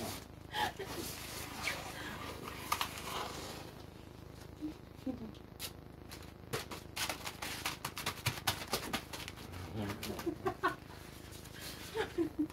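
Blue plastic bag and painter's tape rustling and crinkling as they are wrapped and pressed around a person. It starts as a soft rustle, and from about the middle comes a quick run of sharp crackles.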